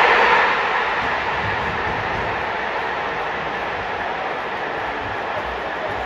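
Large football crowd noise right after an away goal: a burst of cheering at the start that eases to a steady din.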